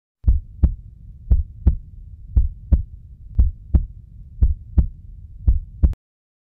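Heartbeat sound effect: six double thumps, about one pair a second, over a low rumble, cutting off abruptly just before the end.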